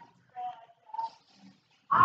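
A person's voice: two short, faint vocal sounds, about half a second and one second in, in a pause between spoken phrases.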